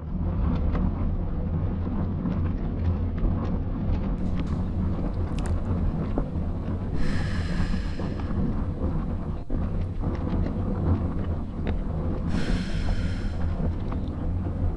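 A steady deep rumbling noise, even in level. A brief higher ringing tone comes twice, about halfway through and again near the end.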